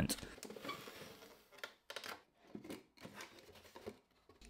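Faint handling sounds of packing tape being smoothed onto a cardboard box: a soft rustle, then a few quiet taps and clicks of cardboard.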